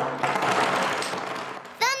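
A toy drum beaten hard and fast, a dense run of rapid hits that stops near the end.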